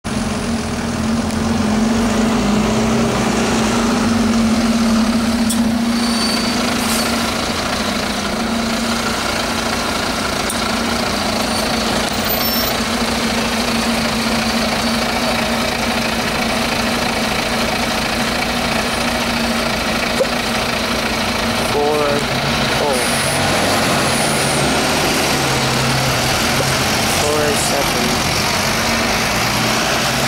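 Diesel double-decker bus engine running as the bus sets off from a stop and drives away, a steady drone with a constant low hum.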